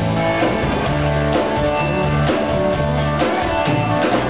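Live rock band playing: guitars over bass and drums, with the full band sounding steadily.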